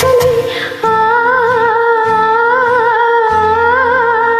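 A woman's voice humming one long held note with a slow vibrato over a karaoke backing track of sustained low chords. A shorter note fades out just before it starts, a little under a second in.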